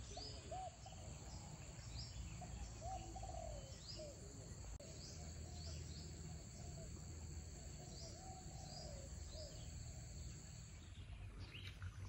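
Faint garden ambience of birds and insects: short rising bird chirps repeat every half second or so over a steady high insect drone, with softer, lower bird calls mixed in. The insect drone stops about a second before the end.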